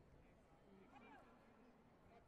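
Near silence: a large hall's room tone with faint, distant voices about a second in.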